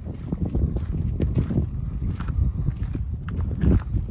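Footsteps on a dry dirt trail, an irregular run of scuffs and knocks, over low rumbling wind on the microphone.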